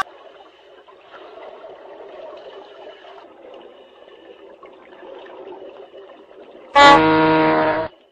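Faint background murmur, then near the end a sudden, loud, steady horn-like blast about a second long that cuts off abruptly.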